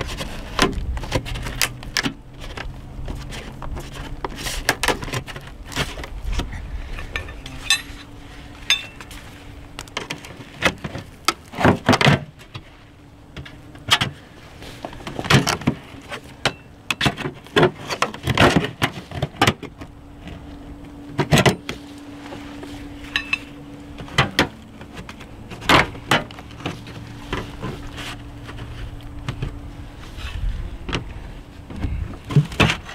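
Soffit panels being pushed and pried at by hand and with a metal hook tool: irregular clicks, knocks and light metallic rattles of the panels and trim. The louder knocks come in clusters through the middle and again near the end.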